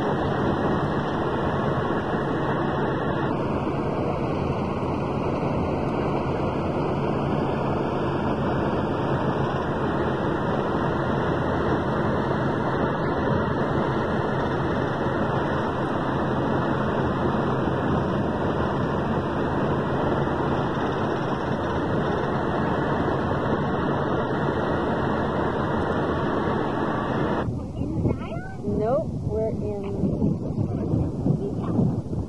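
Steady road, engine and wind noise inside the cab of a motorhome driving along a highway. About 27 seconds in it stops abruptly, and wind and a voice outdoors follow.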